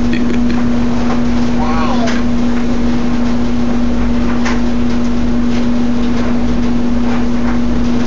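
A loud, steady machine hum at one constant pitch runs throughout, with a few short clicks over it.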